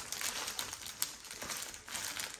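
Thin plastic bag around large portfolio sleeve pages crinkling, with irregular crackles as hands pull at it.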